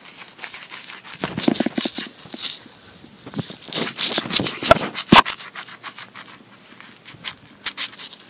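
Wood-chip mulch being brushed aside by hand and a small metal digging tool scraping and crunching into woody mulch and soil, in quick scratchy strokes with a couple of sharper knocks near the middle.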